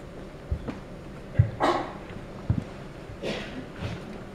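Handling sounds at a lectern: a few dull knocks and two brief rustling swishes, like paper or book pages being shifted, about a second and a half and about three seconds in.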